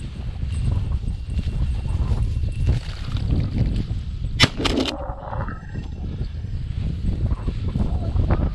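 Wind rumbling on the microphone and footsteps crunching through dry grass, with one sharp click about four and a half seconds in.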